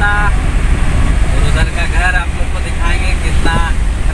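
Ambulance van driving, its engine and road rumble steady inside the cab, with a man's voice over it in several short phrases.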